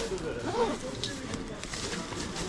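Indistinct nearby voices speaking over the general bustle of a busy market street, with a few small handling clicks.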